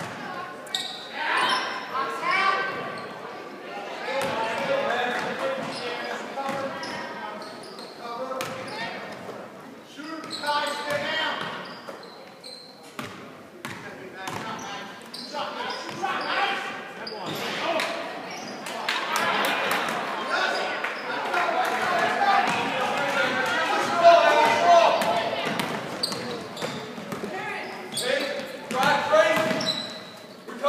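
A basketball bouncing on a hardwood gym floor during a game, with sharp short impacts, over indistinct shouting and chatter from players and spectators that echoes in a large gym.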